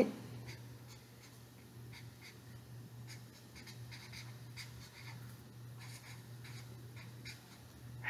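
Felt-tip marker writing on a small square of construction paper: faint, short strokes, over a steady low hum.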